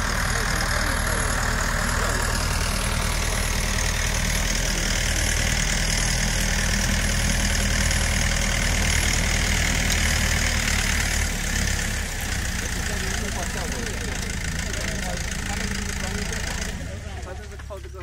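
Engine of a self-propelled boom sprayer running steadily as it moves through the crop, with a steady high hiss over it. The sound falls away near the end.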